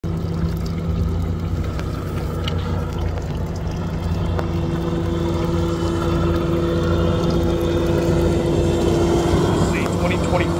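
Pontoon boat's outboard motor running steadily at cruising speed, a constant low drone with a hiss of water. One tone in the drone grows stronger about halfway through.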